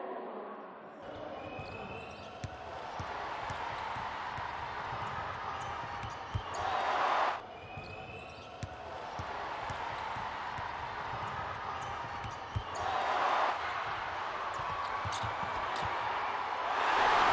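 A basketball bouncing repeatedly on a hardwood court, with the steady murmur of an arena crowd. Twice, a heavier thud is followed by a short, louder burst of sound.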